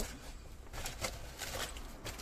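Quiet rustling of a shopping bag being lifted and moved, with a few light knocks.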